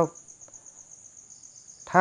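Crickets chirping: a faint, steady, high-pitched trill that pulses evenly.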